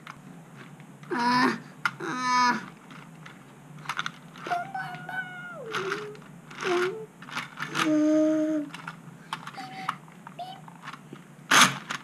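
A child's voice making about five short wordless vocal sounds, spread out between quieter stretches, with a few faint light clicks in between.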